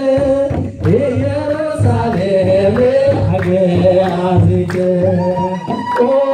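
An Ethiopian Orthodox mezmur (hymn) sung by a male voice through a microphone, with long held, wavering notes over a steady low beat.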